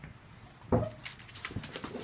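A dog makes one short vocal sound about three-quarters of a second in. Then claws click quickly on a tile floor as a dog moves about.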